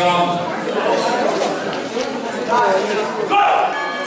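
Several people's voices shouting and calling out over one another in a large, echoing hall, with one loud shout about three and a half seconds in.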